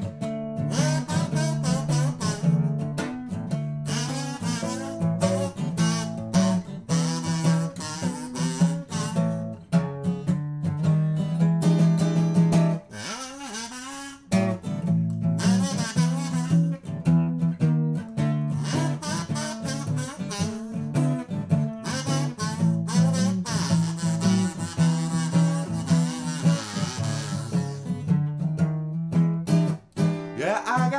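Acoustic guitar strummed through an eight-bar blues progression with a harmonica playing over it, no singing. The playing thins out briefly about 13 seconds in.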